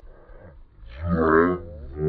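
Low, drawn-out moo-like calls, starting about a second in and coming again about once a second, each lasting about half a second.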